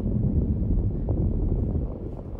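Low, steady rumble of a vehicle heard from inside its cabin.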